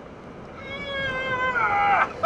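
A drawn-out high vocal call, like a long "heeey", starting about half a second in and sliding down in pitch as it grows louder over about a second and a half.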